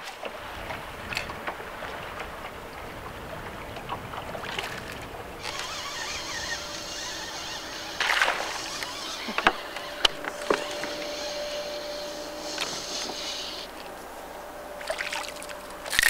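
Water sloshing and lapping against a bass boat's hull, with a few sharp clicks and a faint high whine through the middle stretch.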